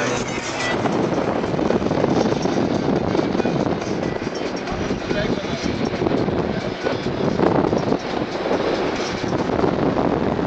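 Wind rushing and buffeting on the microphone in a steady, unbroken roar of noise.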